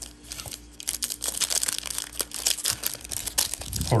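Foil wrapper of a Panini Prizm trading-card pack crinkling in the hands as it is turned over, a rapid crackle that starts about a second in, over a faint steady hum.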